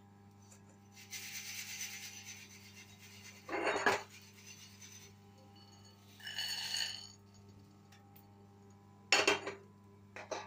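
A wire-mesh skimmer scrapes and sifts through the salt in a metal kadai, lifting out dry-roasted black chickpeas. There is a louder clatter around four seconds in, a short metallic ring around six seconds and a sharp knock near the end.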